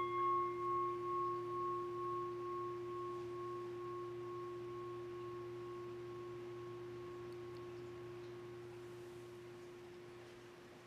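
A struck altar bell ringing at the elevation of the chalice during the consecration. It rings as a steady low tone with a higher overtone, wavering in loudness at first and slowly fading.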